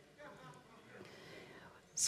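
Faint, low voice barely above room tone, like quiet speech or a whisper.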